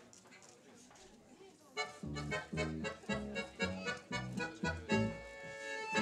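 A small tango band with accordion, violin, piano and double bass starts the song's instrumental introduction about two seconds in. It plays short, detached chords about twice a second, then a long held chord near the end. Before the music starts there is only a faint room hum.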